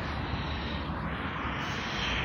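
Wind buffeting the microphone as a steady rumbling hiss.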